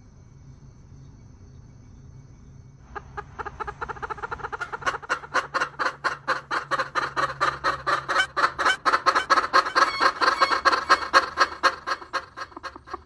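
A gold-laced bantam hen clucking in a fast, steady run of short calls, many per second. The clucking starts about three seconds in and grows louder towards the end.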